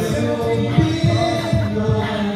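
Male a cappella group singing held harmonies into microphones, over a steady low vocal-percussion pulse, between sung lyrics of a song.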